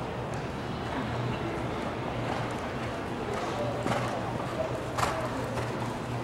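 Indoor horse-show arena ambience: a steady low hum under an indistinct murmur of voices, with two short sharp knocks about four and five seconds in.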